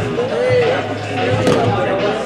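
Indistinct voices calling out in the room, with a single sharp slap or thud about a second and a half in.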